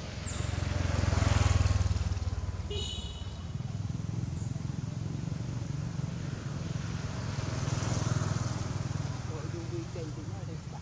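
Low engine rumble of passing motor vehicles, swelling to its loudest about a second in and again near the end, with a few faint high chirps over it.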